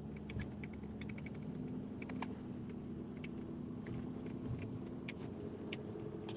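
Car running on a snowy road, heard from inside the cabin as a steady low engine and road hum. Scattered faint ticks sound over it.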